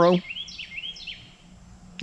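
A songbird calling: a quick series of about six high, downward-slurred notes in the first second, over a faint steady low hum.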